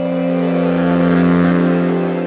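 Electronic bass music (glitch-hop/halftime): a synth held on one low note with a stack of overtones, under a hissing swell that grows louder toward the middle and eases near the end.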